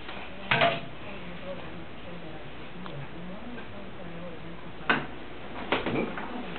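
A few sharp knocks or clatters of hard objects: one about half a second in and two more near the end, over a faint low murmur.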